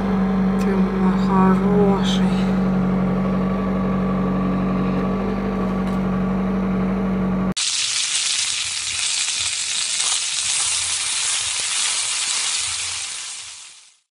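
Chevrolet Lanos just cold-started in hard frost, idling with the heater blowing: a steady hum heard from inside the cabin. About seven and a half seconds in it cuts off suddenly to pies sizzling in hot oil in a cast-iron pan, which fades out near the end.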